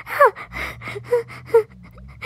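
A woman gasping nervously in suspense, several short breathy cries in quick succession.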